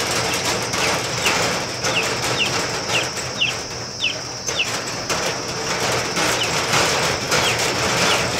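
A small bird repeating short, high, falling chirps, about two a second, fading out midway and returning briefly near the end, over a steady background hiss.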